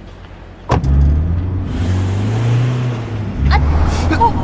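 A car door slams shut less than a second in. Then the car's engine revs loudly as it pulls away abruptly, with a few sharp knocks near the end.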